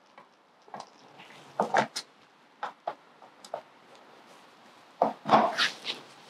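Scattered light clicks and knocks of a thin rod being fitted into holes on a hard-shell rooftop tent's frame, with a louder burst of handling noise about five seconds in.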